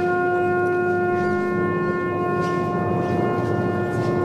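A wind instrument of the procession band holding one long, steady note.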